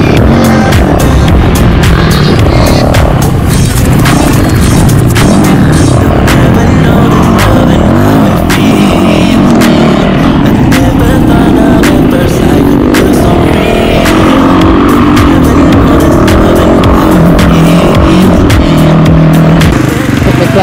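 Dirt bike engine revving and running hard through the gears on a trail ride, with music laid over it.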